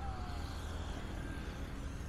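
Steady outdoor street ambience: a low, even rumble of vehicle traffic.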